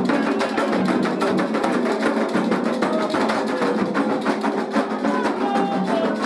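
Candomblé atabaque drumming for an orixá's dance, the rum: dense, steady hand-drum strikes with sharp clicking accents over the rhythm.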